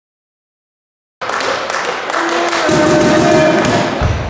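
Silence, then about a second in the echoing sound of an indoor volleyball match cuts in abruptly: players' voices, ball thuds and sharp knocks in a sports hall.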